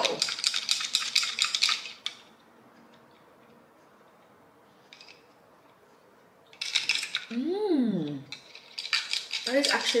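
Ice cubes clinking and rattling against a glass as an iced drink is stirred with a straw, in a quick run of clinks for the first two seconds and again from about two-thirds of the way in. A short hummed voice sound rises and falls in pitch amid the second run.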